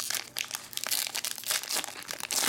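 Foil trading-card pack crinkling and tearing as it is pulled open by hand: a continuous run of crinkles and small crackles.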